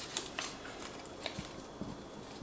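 Light handling of a MagSafe charging cable's paper wrap as its tab is pulled open: a few soft ticks and rustles of paper and cable.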